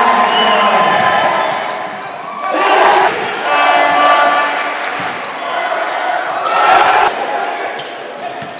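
Basketball game sound in an echoing sports hall: the ball bouncing on the court, crowd noise and a voice talking, with louder swells about three seconds and seven seconds in.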